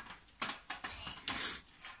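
Stiff placemats being handled and carried, rubbing and tapping against each other: a handful of soft rustles and light knocks spread through the moment.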